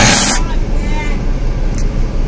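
A sudden loud hissing burst lasting under half a second, then a steady low rumble with faint voices behind it. The rumble is heard from inside a car's cabin.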